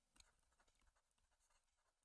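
Near silence, with a few faint clicks and scratches from a stylus writing on a drawing tablet.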